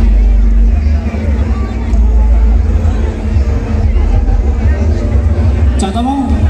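A large BP Audio carnival sound system ('sound horeg') playing loud music with deep, heavy bass, over crowd chatter.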